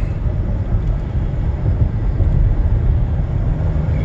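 Steady low rumble inside the cabin of a Ford Flex driving at around 50 mph: road and running noise of the moving car.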